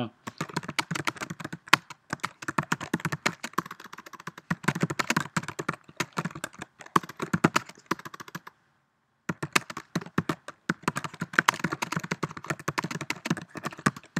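Typing on a computer keyboard: a quick, irregular run of key clicks, with a pause of under a second a little past halfway.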